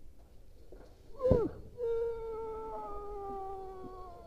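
A man's long sustained yell during a rope-jump free fall, held on one slowly falling pitch for several seconds, after a short sharp cry about a second in.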